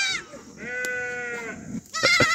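A sheep or goat of the herd bleats once: one long, steady, fairly high call of about a second, starting about half a second in.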